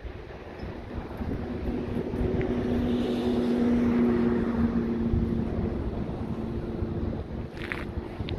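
A distant engine drone, a steady hum that swells to its loudest about halfway through and fades again, over wind buffeting the microphone.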